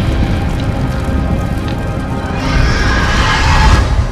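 Loud, dense music with a high, noisy swell that builds through the last second and a half and stops abruptly at the end.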